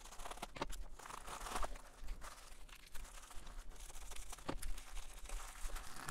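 Scissors cutting open a plastic bubble mailer, then the plastic packaging and bubble wrap crinkling as they are handled: faint, irregular rustles and sharp little ticks.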